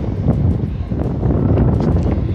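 Wind buffeting a phone's microphone: loud, gusting low noise that surges and dips.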